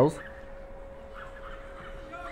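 Quiet outdoor football-ground ambience under a steady faint hum, with faint distant calls a little over a second in and again near the end.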